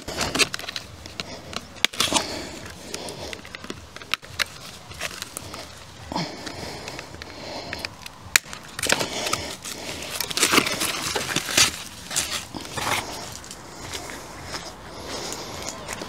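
Handling noise of packaging being removed from an e-bike: foam and plastic wrap rustling and crackling, with scattered sharp clicks as zip ties are cut.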